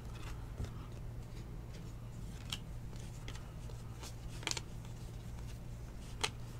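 Faint snaps and slides of cardboard baseball cards being flipped through by hand, a handful of short scattered clicks over a steady low hum.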